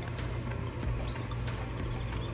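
Steady low hum with a few soft footsteps on dirt and grass, and faint high chirps.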